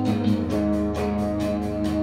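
Rock band playing live: electric guitar and bass guitar holding full chords over a steady beat, with no singing in this stretch.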